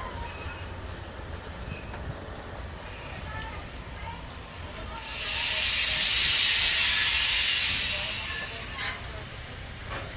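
Passenger train rolling slowly out of a yard, with a low steady rumble and a thin high wheel squeal that comes and goes on the rails. About halfway through, a loud hiss starts abruptly and fades away over about three seconds.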